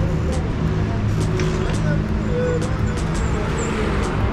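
Street traffic with a vehicle engine running close by, low and steady, and footsteps on pavement about twice a second.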